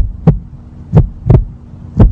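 Heartbeat sound effect: paired low thumps about once a second over a steady low hum.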